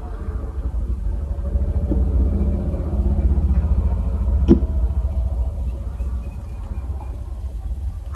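Low, steady motor-vehicle rumble heard inside a vehicle's cab, swelling a few seconds in and easing off near the end, with a single sharp click about four and a half seconds in.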